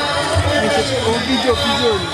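Party music with a singing voice over low drum beats, mixed with crowd chatter.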